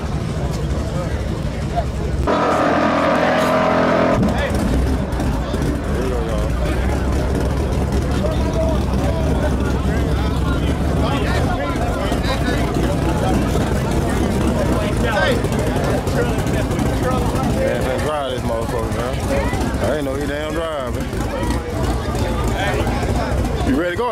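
Car engines running with a steady low rumble under crowd chatter. A loud, steady-pitched engine blast starts suddenly about two seconds in and cuts off about two seconds later.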